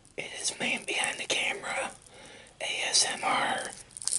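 A man whispering close to the microphone in two phrases.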